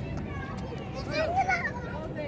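A young child's high-pitched excited vocalizing, loudest a little past a second in.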